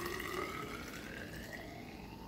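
Fizzy home-fermented ginger ale poured in a steady stream from a measuring cup into a tall, narrow hydrometer test jar, the pour rising in pitch as the jar fills.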